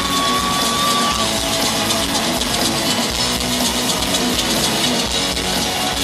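Live rock band playing at full volume with electric guitar to the fore, recorded from the crowd in an arena. A single high note is held for about the first second.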